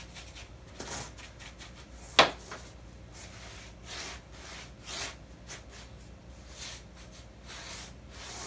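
A paintbrush scrubbing a thin burnt umber glaze onto a textured board, in a series of short scratchy strokes. One sharp tap about two seconds in.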